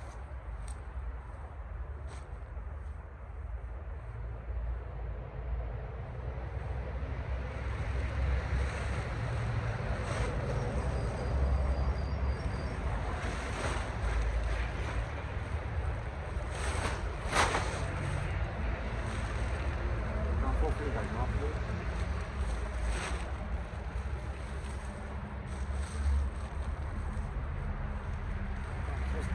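A large camouflage tarp rustling and crackling as it is shaken out and gathered up close to the microphone, loudest about seventeen seconds in. A steady wind rumble runs underneath it.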